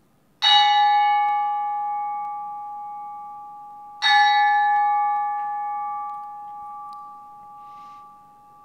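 A metal bell struck twice, about half a second in and again about four seconds in. Each strike rings on with several steady tones and fades slowly.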